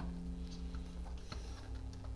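A few faint plastic clicks as the cassette door frame of a Coleco Adam Data Drive is pressed and worked by hand, with a steady low hum underneath. The door mechanism is sticking and won't spring open freely.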